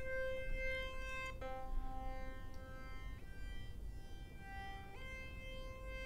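Logic Pro X 'Funk Lead' synth lead playing four slow held notes that change pitch about every one and a half to two seconds. Its low end is thinned by a Channel EQ low-shelf cut.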